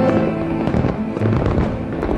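Fireworks bursting and crackling, a rapid cluster of sharp pops through the middle of the moment, over orchestral music.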